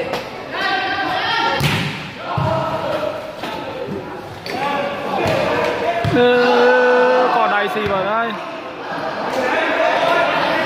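A volleyball struck by hand: a few sharp smacks, two close together about two seconds in, under men's voices talking and shouting throughout in a large, reverberant hall.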